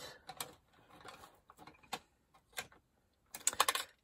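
Light clicks and taps of craft tools being handled on a table, with a quick cluster of sharp clicks just before the end.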